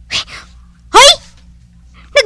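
A person startled by a sudden poke: a short sharp gasp, then a loud yelp rising in pitch about a second in.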